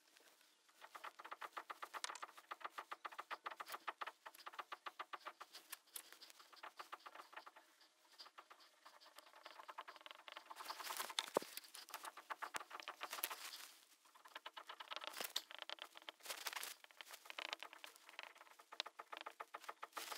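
Faint sound of a marker squeaking and scratching on a whiteboard as a diagram is drawn. It starts with a run of quick, even strokes, about five a second, for a few seconds, then goes on in irregular longer strokes.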